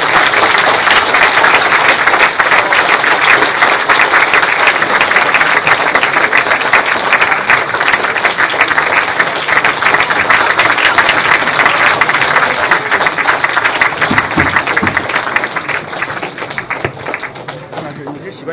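Audience applauding: a long, dense round of clapping that tapers off over the last couple of seconds.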